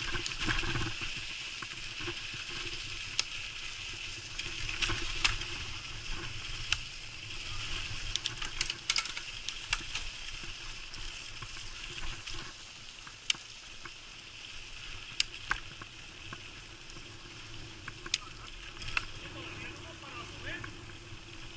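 Mountain bike rolling along a dirt trail: steady tyre noise on dirt and gravel, broken by scattered sharp clicks and rattles from the bike over bumps.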